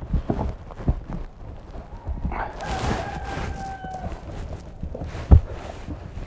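Rubber tire flap being pushed and tucked by hand inside a large tube-type tractor tire, with scattered rubbing and knocking handling noises and one sharp thump a little after five seconds in.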